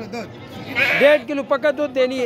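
A goat bleating: one short call about a second in, among men's voices.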